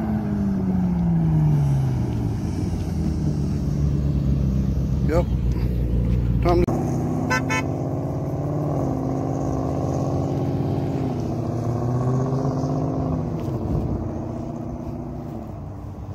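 Car engines heard from the roadside: one engine's pitch falls steadily as the car pulls away. After a sudden change, another engine runs with its pitch rising and falling and fades near the end. Two short beeps come about seven seconds in.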